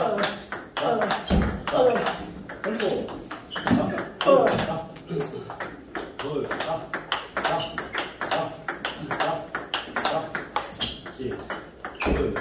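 Table tennis multiball drill: a rapid, even stream of clicks as plastic ping-pong balls bounce on the table and are struck by rubber paddles, forehand drive after forehand drive in quick succession.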